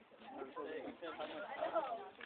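Indistinct voices of several people talking over one another, no words clear.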